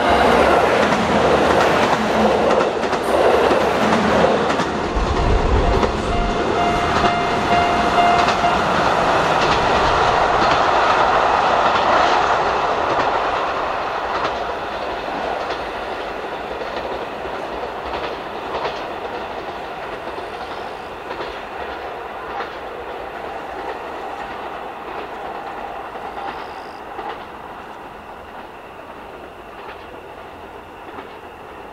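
KiHa 183 series diesel multiple unit running past and away along the line: engines and wheel clatter over the rails are loud for the first dozen seconds, then fade steadily as the train recedes.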